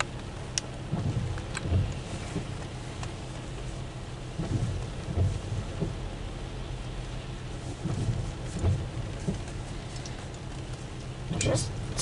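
Rain pattering on a car's roof and windshield, heard from inside the car as a steady hiss, with a few low rumbles coming and going.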